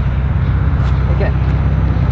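A steady low rumble of a car engine idling, with no change in pitch.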